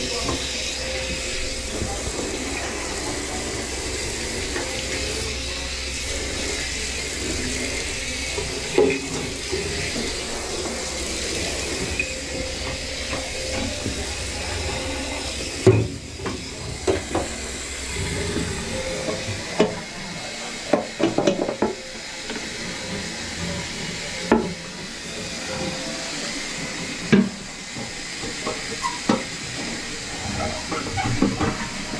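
Water spraying from a handheld shower head into a bathtub, a steady hiss that cuts off about halfway through. After that come scattered knocks and rubbing sounds as gloved hands work on the tub.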